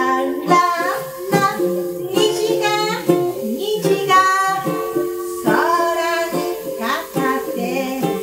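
A woman singing a gentle melody in Japanese while strumming a ukulele.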